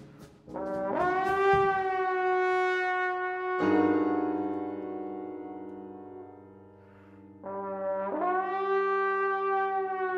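Solo trombone in a jazz big band playing long held notes, each scooping up into its pitch. Between the two notes a low sustained chord comes in and slowly fades.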